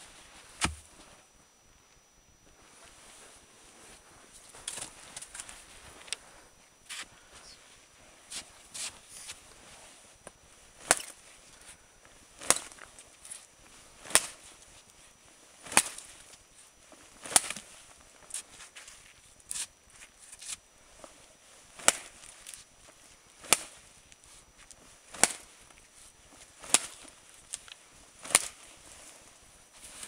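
A large Busse custom knife chopping into standing saplings: sharp wooden chops, scattered and lighter at first, then a steady stroke about every second and a half through the second half.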